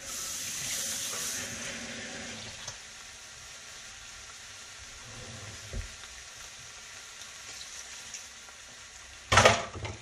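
Ground turkey and vegetables sizzling in a hot skillet, loudest for the first couple of seconds and then settling to a steady low sizzle, with a small knock about halfway. Near the end, a short loud burst of hissing as half a cup of water goes into the hot pan.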